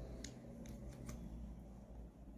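Faint small plastic clicks and handling of a liquid lipstick tube as it is opened and the applicator wand is drawn out, three light clicks in the first second.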